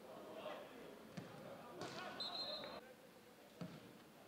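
A football being kicked on grass, with sharp thuds about a second in and again near the end, and players' shouts carrying across an empty stadium. A brief high-pitched steady tone sounds just after two seconds.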